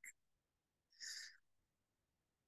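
Near silence, broken by two faint, short hissy sounds: one right at the start and a slightly longer one about a second in.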